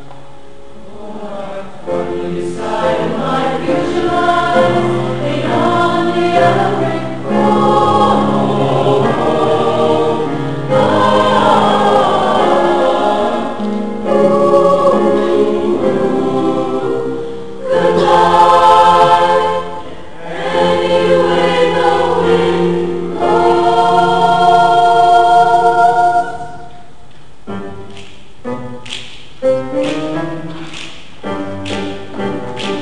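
Mixed choir singing in full harmony, in long held phrases with short breaks between them. The singing stops about four seconds before the end, leaving a few light knocks.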